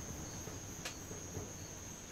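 A steady high-pitched tone, with a single sharp click a little under a second in.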